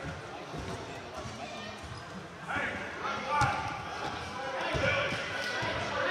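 Echoing gym with several spectators and players calling out and talking over one another, the voices growing louder about halfway through. A basketball thuds on the hardwood floor a few times.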